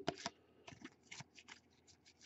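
Topps Stadium Club baseball cards being flicked one by one from the front of a stack to the back by hand. It makes a quick run of faint, light card-on-card flicks, and the first one is the loudest.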